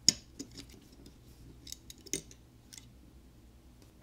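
Light clicks and taps of small phone parts being handled as the Google Pixel 5's main board is lifted out of its frame. There is one sharp click at the start, a louder tap about two seconds in, and a few faint ticks between.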